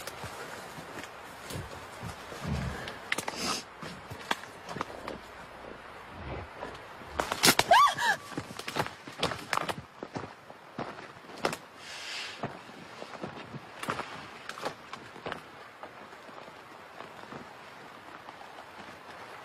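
Irregular crunching and rustling steps outside a tent at night, from something unseen moving around. About seven and a half seconds in comes the loudest moment: a sharp burst with a brief call that bends in pitch, and a hissing rustle follows about twelve seconds in.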